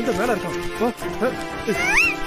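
Cartoon character voices over background music: several short rising-and-falling vocal exclamations, ending with a high rising squeak.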